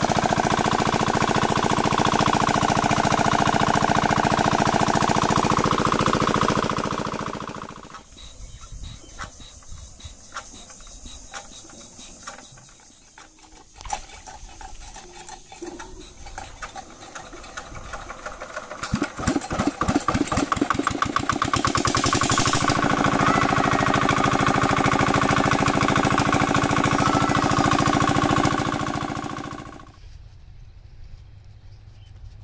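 Single-cylinder diesel engine driving a water pump: it runs loudly and steadily, then winds down and stops about seven seconds in. After a quieter stretch with scattered knocks and clicks, it is cranked over, the beats quicken, and it catches about twenty-two seconds in and runs steadily again.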